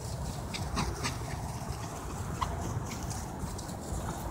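Small dogs running on grass, with a steady low rumble of wind and handling noise from a camera carried at a run. A few short, high-pitched sounds come in the first second, about midway and near the three-second mark.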